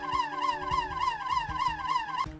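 Electronic siren of a toy fire station, sounding a rapid warble of falling sweeps, about five a second.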